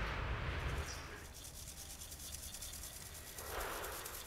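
Scratchy rubbing noise, like a hand rubbing a gritty surface: one stretch in the first second, then quieter, with a second swell near the end.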